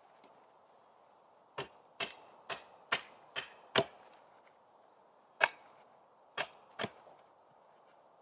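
A small axe chopping a point onto a silver birch stake held against a log. There are nine sharp wooden chops: a run of six at about two a second, starting after a second and a half, then a pause and three more.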